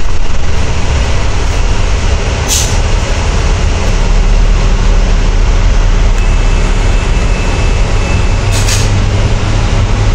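Volvo B10TL double-decker bus under way, heard from inside: its Volvo D10A 9.6-litre six-cylinder diesel running steadily with road noise, and two short hisses, one about two and a half seconds in and one near the end.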